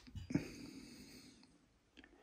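A brief faint knock, then a soft breath out through the nose lasting about a second.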